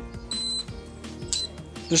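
Two high electronic beeps from the Bold smart cylinder lock, the first lasting about a third of a second and a shorter one about a second later, over soft background music.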